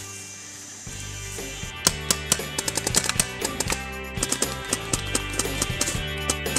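Background music: held chords at first, then a quick, clicky percussive beat comes in about two seconds in.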